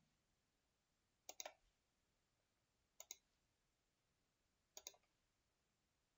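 Computer mouse clicking three times, each a quick pair of ticks about a second and a half apart, with near silence between.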